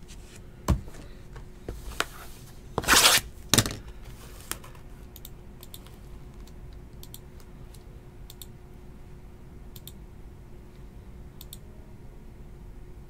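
A shrink-wrapped cardboard box of trading cards being handled on a table: a few light knocks, a louder rustling scrape about three seconds in and a shorter one just after, then only faint light ticks.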